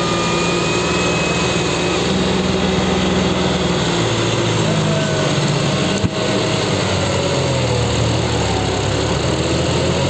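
John Deere 5310 tractor's diesel engine running under load as the tractor works to pull out of deep mud. The engine pitch shifts a couple of times, and there is a single sharp knock about six seconds in.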